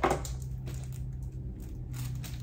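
Cardboard box and packaging being handled: a sharp click right at the start, then light rustling and small knocks, over a faint steady hum.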